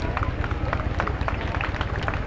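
Outdoor parade crowd: spectators talking, with scattered sharp claps, over a low steady rumble.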